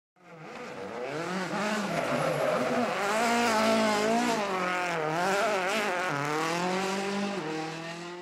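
Rally car engine revving, its pitch rising and falling repeatedly as if driven hard through corners. It fades in at the start and fades out at the end.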